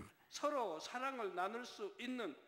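Only speech: a man's voice talking at a low level, with no other sound.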